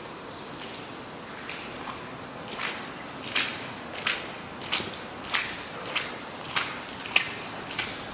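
Footsteps walking at an even pace on a wet, gritty concrete floor, beginning a couple of seconds in at about one and a half steps a second.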